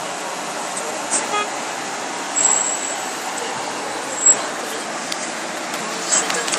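Steady road and traffic noise heard from inside a moving car, with a brief pitched toot about a second and a half in and short high-pitched squeaks around two and a half and four seconds in, the later one the loudest.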